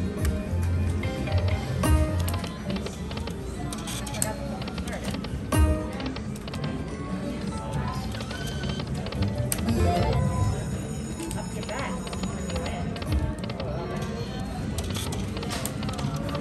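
Autumn Moon Dragon Link slot machine playing its electronic reel-spin music and tunes, with sharp clicks as the reels stop, over a steady babble of casino-floor chatter.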